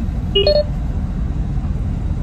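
Steady low rumble inside a car cabin, with a brief two-note electronic beep about half a second in.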